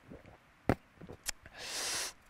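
A man drinking from a can: two short gulps or swallow clicks, then a breathy exhale near the end.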